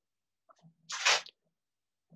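A short, sharp intake of breath about a second in, between spoken phrases.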